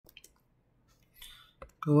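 A few faint clicks and a soft short hiss, then a single sharper click, before a man's voice starts speaking Mandarin near the end.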